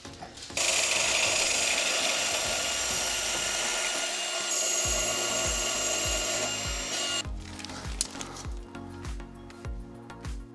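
A DeWalt 20V MAX XR cordless portable band saw cuts through 1.5-inch DOM steel tubing with a steady cutting sound that starts about half a second in and stops about seven seconds in. Background music with a steady bass beat comes in about halfway through and carries on after the saw stops.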